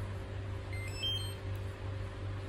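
GOOLOO GT150 tire inflator powering on, giving a short chime of several quick beeps at stepping pitches about a second in, over a steady low hum.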